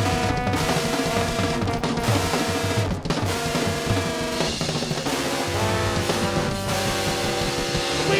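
Live band playing an instrumental stretch, taken from the soundboard mix: a busy drum kit with rolls, snare and bass drum over electric bass, with trombone holding notes on top.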